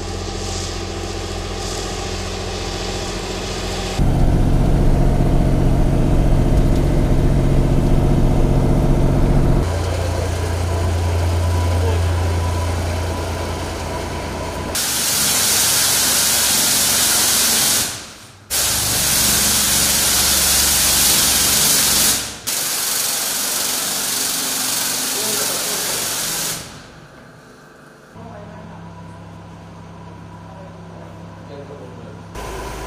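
A disinfectant spraying vehicle's engine running with a steady hum that changes character twice. Then comes a loud steady hiss of disinfectant sprayed from a hand-held pressure spray gun, broken twice briefly, and a quieter hum near the end.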